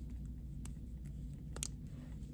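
Two faint clicks of a King Seiko's stainless steel bracelet and butterfly clasp being handled, the second a little louder, over a low steady hum.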